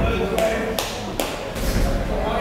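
Boxing gloves landing punches in an exchange: a quick run of four sharp smacks about half a second apart.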